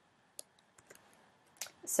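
A few sparse, faint clicks of a computer keyboard and mouse as a spreadsheet cell is selected and an equals sign typed; the last click, near the end, is the strongest, just before speech begins.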